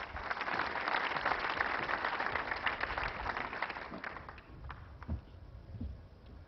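Audience applauding, dense clapping that fades out after about four seconds, followed by a couple of low thumps near the end.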